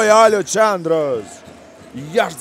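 A male basketball commentator's excited, raised-pitch call for about the first second, drawn out and falling, then a quieter lull.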